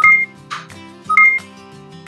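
Two short electronic beeps about a second apart as the buttons on pink plastic toy blenders are pressed.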